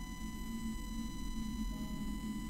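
Soft background music of held, mellow notes over a steady electrical hum and faint high whine, with no speech.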